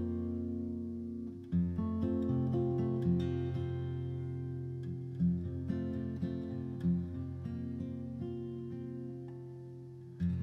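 Background music of acoustic guitar: plucked notes and chords ringing out, with a new note struck every second or two.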